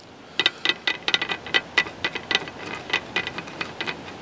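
Stir stick clicking and scraping against the bottom of a plastic paint-palette well as soil is mixed with pH indicator into a paste. The clicks come quickly and irregularly, several a second.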